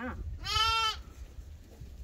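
A lamb bleating once, a single high call of about half a second, starting about half a second in.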